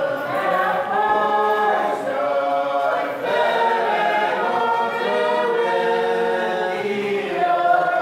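A group of voices singing a hymn together in harmony, holding long notes that change pitch every second or so.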